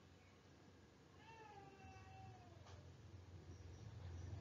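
A faint single drawn-out animal call, about a second and a half long, sliding down a little in pitch near its end, over near-silent room tone.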